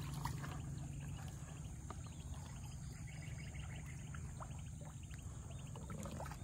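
Floodwater splashing and dripping softly as a gill net is lifted and handled in the water, a few small splashes scattered through. Faint insect chirps repeat in the background over a steady low rumble.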